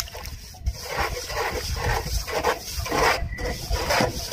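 A long-handled shovel mixing wet cement on bare ground: repeated wet scraping and slopping strokes as the blade works the mix.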